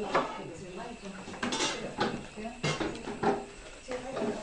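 Indistinct talk of several people, broken by a few sharp clicks and clatters of objects handled on a table.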